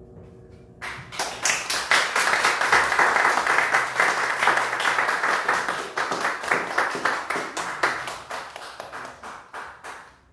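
Audience clapping after a trumpet and piano piece; the last trumpet note is just dying away when the clapping breaks out about a second in. The clapping is loudest in the first few seconds and thins out toward the end.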